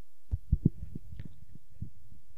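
A quick run of dull low thumps in the first second, a few weaker ones after, and one more near the end, over a faint steady hum.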